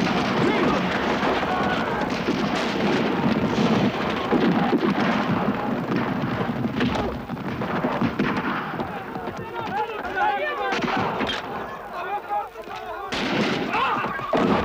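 Film battle soundtrack: dense rifle and machine-gun fire with men shouting and yelling, as a mounted charge clashes with infantry. The firing is thickest in the first half and thins somewhat near the end.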